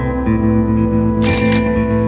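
Slow, sustained background music, over which a camera shutter fires once, a brief crisp burst about a second and a quarter in.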